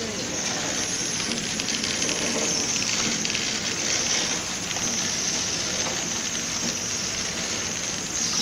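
Horizontal flow-wrap packaging machine running at a steady speed, giving an even, continuous mechanical noise.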